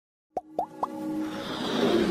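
Intro sound effects: three quick plops about a quarter-second apart, each gliding upward and each pitched higher than the last, followed by a swelling musical rise that grows steadily louder.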